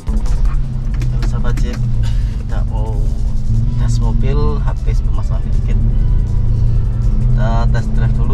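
Jeep Wrangler JK heard from inside the cabin while driving: a steady low rumble of engine and road, with short bits of voice and music over it.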